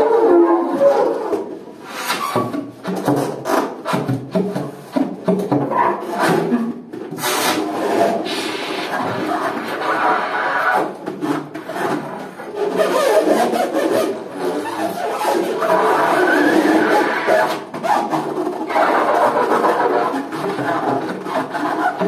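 Free-improvised saxophone and snare drum duo. The drummer works the snare head with his hands, rubbing and scraping it, with quick clattering strikes, while the saxophone plays. The texture thickens into a denser, more sustained mass in the second half.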